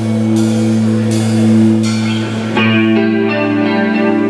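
Live rock band playing an instrumental passage on electric guitars, bass and drums, with cymbal strikes in the first half. A guitar line comes in about two and a half seconds in.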